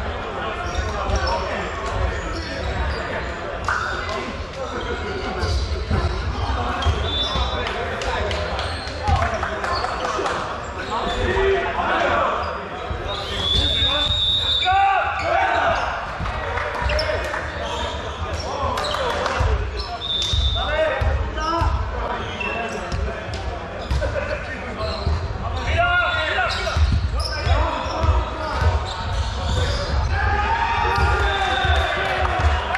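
Indistinct voices of volleyball players talking and calling to each other in a large sports hall, with a volleyball bouncing on the wooden court floor now and then.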